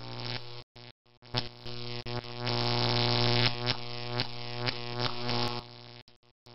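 Electrical buzz of a flickering neon sign: a low buzzing hum with a stack of overtones that cuts out and stutters back on in the first second, crossed by sharp crackling zaps. It then dies away in short flickers at the end.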